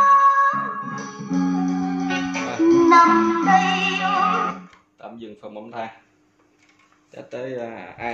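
A song with singing and guitar playing through a Sharp GX-55 stereo combo's speakers, cut off abruptly about four and a half seconds in when a front-panel button is pressed. A few short bits of speech follow, then a man's voice near the end.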